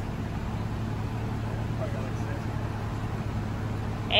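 BMW convertible soft top retracting: the roof mechanism runs with a steady, even hum while the top folds back.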